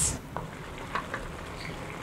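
Minced pork in a tomato and chilli sauce simmering in a wok over lowered heat: a soft, steady sizzle with a few faint pops.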